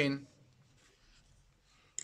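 Faint scratching of a pen on paper as a small letter is written, followed by a short click near the end.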